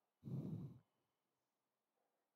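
A man's short breathy sigh into a close headset microphone, lasting about half a second, followed by near silence.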